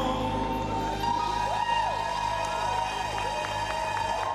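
Live band with keyboard ringing out the closing chord of a ballad while the audience begins to cheer. Scattered claps come near the end.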